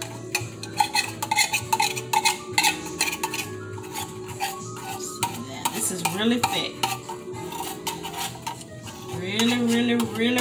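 A metal spoon scraping and clinking around the inside of an opened tin can of sweetened condensed milk, getting the last of the thick milk out: quick, close-together strokes for the first half, thinning out after that.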